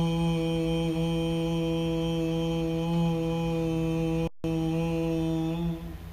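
A man's voice chanting one long, steady, low "om" on a single held note during a breathing exercise, ending shortly before the end. The sound drops out briefly a little past four seconds in.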